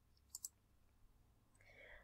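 Near silence broken by two faint computer mouse clicks in quick succession, about a third of a second in.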